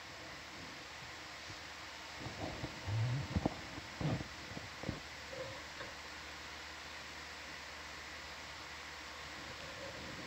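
Steady hiss of an open microphone, with a few brief low thumps and rumbles between about two and five seconds in.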